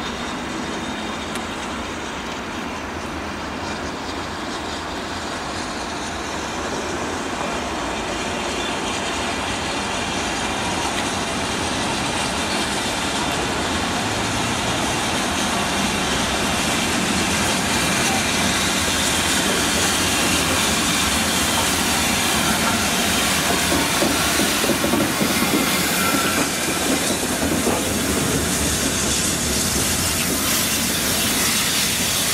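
BR Standard Class 7 'Britannia' 4-6-2 steam locomotive 70013 Oliver Cromwell rolling into a station with its train, steam hissing. The sound grows steadily louder as the engine approaches and passes close by.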